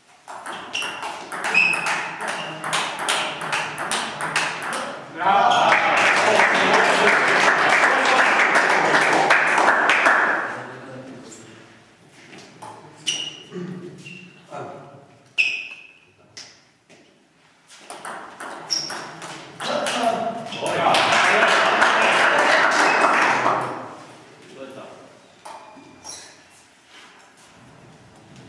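Two table tennis rallies: the ball clicks rapidly off bats and table, and each rally is followed by several seconds of loud voices in the hall. Between the rallies come a few single ball bounces.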